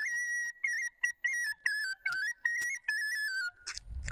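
A bansuri, a small side-blown flute, playing a high folk melody in short, separated notes with quick stepped ornaments. The tune settles a little lower in pitch in the second half, with a brief break near the end.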